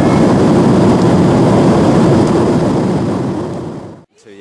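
Steady airliner cabin noise heard through the window seat, an even low rush with no distinct tones, fading away over the last second or so.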